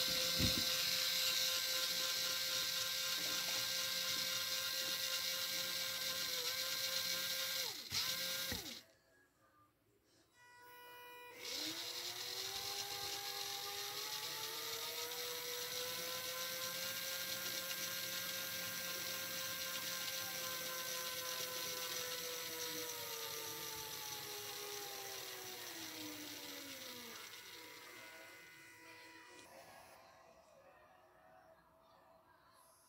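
Small DC gear motor spinning a wheel, with a steady whine and gear rattle. It cuts out about nine seconds in. It then starts again with its pitch rising as the potentiometer turns the speed up, holds, and falls away as the speed is turned back down near the end.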